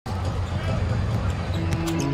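Basketball game sound: a ball dribbling on a hardwood court over arena crowd noise, with a held note of arena music coming in about three-quarters of the way through.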